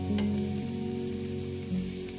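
Chopped onion and garlic sizzling gently in oil in a frying pan as a wooden spatula stirs them, under soft background music with slow held notes.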